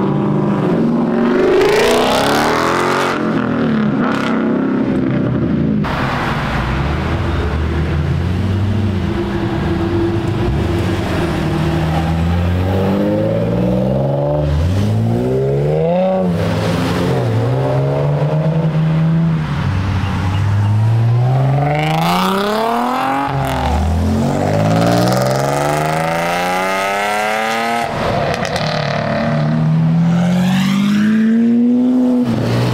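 Performance car engines accelerating past one after another, revving up and dropping back several times as they shift through the gears. A Chevrolet Camaro pulls away near the start, and a Lamborghini Aventador V12 comes by near the end.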